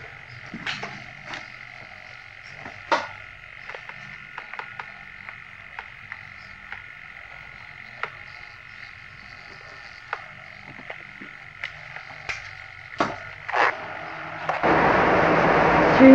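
Camcorder handling noise: scattered short clicks and knocks over a steady faint hum, with a louder hiss coming in near the end.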